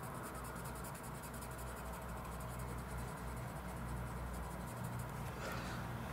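Crayola coloured pencil scratching quickly back and forth on paper as a yellow swatch is coloured in, faint.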